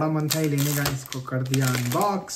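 A man's voice holding steady drawn-out notes, like a hummed fanfare, over clicks and rustles of an iPhone box and its packaging being opened.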